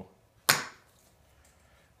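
A single sharp knock as the golf-ball end of a homemade sanding stick strikes the concrete floor about half a second in and bounces, dying away quickly.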